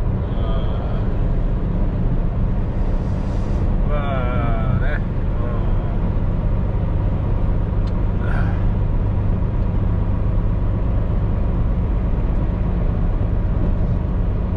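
Inside the cab of a heavy truck loaded with about ten tonnes, cruising on the expressway: a steady low diesel engine drone with tyre and road noise. A short wavering vocal sound comes in about four seconds in.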